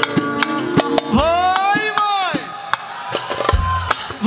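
Live Ankara-style Turkish dance music (oyun havası), with steady drum strikes under a keyboard. About a second in, one long melodic note slides up and falls away.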